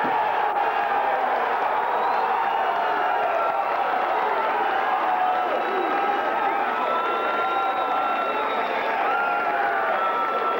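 Arena crowd cheering and shouting steadily, with long held shouts over the noise, acclaiming the winner at the end of a fight.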